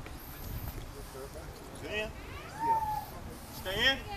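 Drawn-out, wordless shouts from onlookers, rising and falling in pitch, the loudest just before the end, as they react to a hammer throw.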